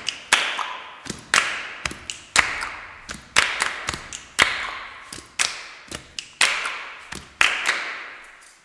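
Group hand claps in a steady rhythm, a strong clap about once a second with lighter claps between, each ringing on in a reverberant room. The clapping stops near the end.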